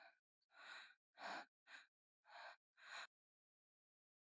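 A woman's breathing in distress: about six short gasping breaths in quick succession, stopping about three seconds in.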